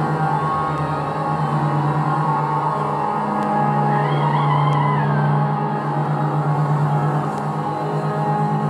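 Improvised drone music on electric bass and voice with electronics: a steady low pulsing drone under layers of sustained tones, with a short wavering high tone about halfway through.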